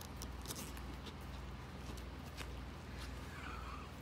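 Low steady hum with scattered faint clicks and scratches, as a tiny chihuahua puppy moves about inside a mesh pet carrier.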